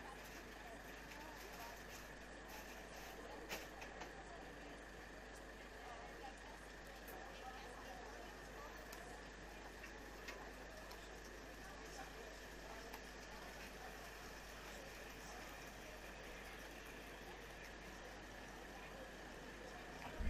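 Faint background ambience: a steady low hum and a thin, steady high tone under a quiet haze of noise, with a few faint clicks, about three and a half seconds in the clearest.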